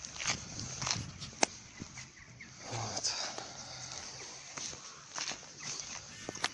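Footsteps on dry, gritty ground with rustling handling noise, and one sharp click about a second and a half in.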